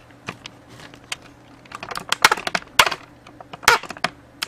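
Irregular clicking of computer keyboard keys, about a dozen keystrokes with a cluster about two seconds in, as a web page is scrolled.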